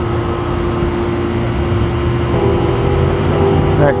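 A machine running with a steady hum and a low rumble. Its tone shifts slightly about halfway through.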